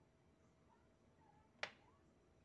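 Near silence, broken by a single sharp click about one and a half seconds in.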